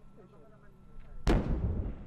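A single loud rocket-launch blast from rocket artillery, coming suddenly about a second in, then rumbling away.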